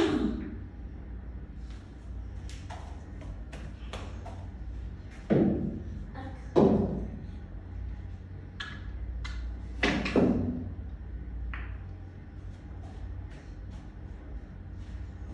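Pool cue and billiard balls: sharp clicks of the cue striking and the balls hitting each other. Louder knocks come at the start and about five, six and a half and ten seconds in, over a low steady hum.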